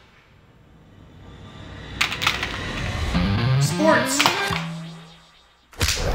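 Advert soundtrack: a swelling sound effect, then small plastic coffee pods clattering onto a hard floor about two seconds in. Rising pitched sweeps follow. After a brief drop-out near the end, loud music starts.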